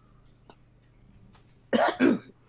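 Near silence, then a person coughs once, sharply, near the end.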